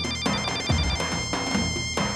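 Kurdish dance music on an electronic keyboard: a high, quickly repeated synth melody over a steady beat of low drum hits.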